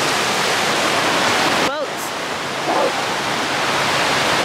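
Ocean surf washing in over sandy shallows: a steady rush of foaming water, broken briefly just under two seconds in by a short wavering voice-like sound.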